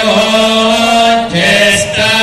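Male priests chanting Hindu mantras together in long, steady held notes, with a change of note about a second and a half in.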